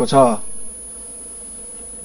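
A man's speaking voice ends in the first half-second, followed by a steady background buzz with a thin, constant high-pitched whine.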